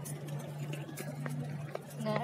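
Busy city street ambience: a steady low hum under faint distant voices and a few light clicks from the phone being moved.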